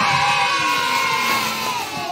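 A man's voice holding one long, drawn-out sung shout of "IHOP", its pitch slowly falling, cut off about two seconds in.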